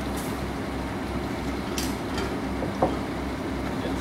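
Heavy diesel engine of a crane running steadily with a low, even throb. A few sharp metallic clinks and one knock just under three seconds in sound over it.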